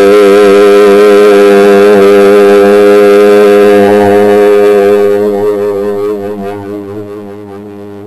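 A man's voice chanting one long sustained note, the A flat ('La flat') that he sounds for Neptune in a meditation toning exercise. The note holds steady, then fades away over the last few seconds.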